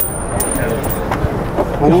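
Steady outdoor background noise of a crowd and street, with a few faint clicks.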